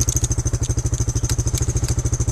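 Quad (ATV) engine idling steadily with a fast, even pulse, with a few light clicks over it.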